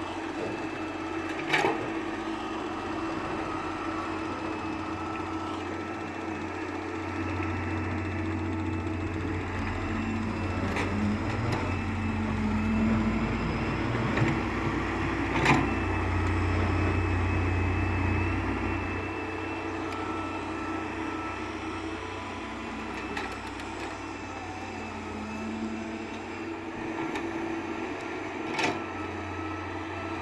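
Wheeled hydraulic excavator's diesel engine running, with a steady mechanical whine. A deeper rumble swells through the middle as the machine works under load. A few sharp knocks stand out, the loudest about halfway.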